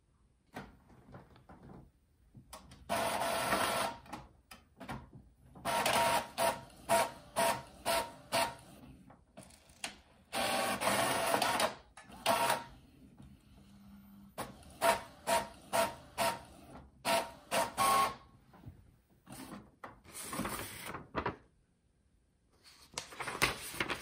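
Epson EcoTank ET-3850 inkjet printer running an automatic two-sided print job. It makes whirring mechanical passes that start and stop, with runs of short strokes about two a second between longer stretches, as the print head and paper feed work the sheet.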